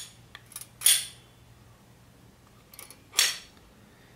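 Spring-loaded aluminium wheels on a rabbit hanger being pushed and released by hand, giving two short metallic scrapes, about a second in and near the end, with a few faint clicks between.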